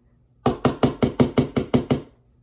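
A small hammer tapping a nail into a drywall wall to hang a towel: about nine quick, sharp strikes, roughly five a second, starting about half a second in.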